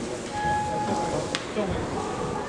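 A single steady beep, one flat tone about a second long, over the murmur of voices in a large hall, followed right after by a sharp click.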